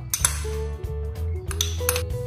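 Light clinks of a utensil against a glass mixing bowl, one about a quarter second in and two more close together near the end, over steady background guitar music.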